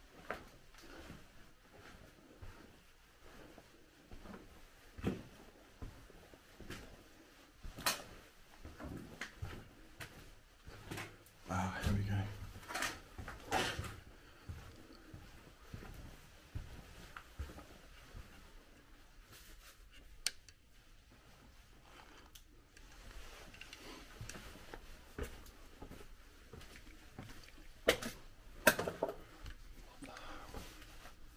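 Footsteps over rubble and scattered debris on a floor, with occasional sharp knocks and scrapes and a louder cluster of crunching and clattering about twelve seconds in.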